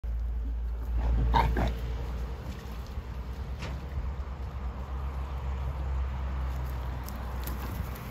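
A pig gives a short squealing cry about a second in, over a steady low rumble.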